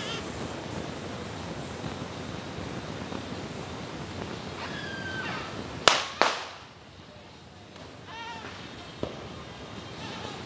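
Two loud firecracker bangs in quick succession about six seconds in, the second dying away, then a fainter pop near the end, over a steady background of street noise.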